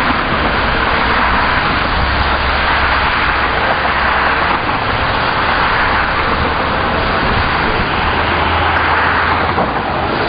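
Steady rushing outdoor noise with a low rumble underneath, heard through an 8mm camcorder's microphone, with no distinct events.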